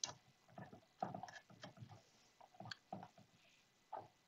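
Faint, scattered clicks and taps of small stainless steel compression-fitting parts and pipe being handled.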